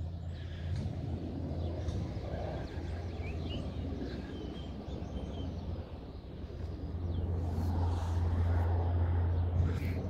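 Outdoor background: a steady low rumble that grows a little louder near the end, with a few faint bird chirps a couple of seconds in.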